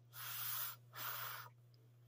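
Two short puffs of breath blown across a spoonful of freshly microwaved mug pancake, each about half a second long, the second following just after the first.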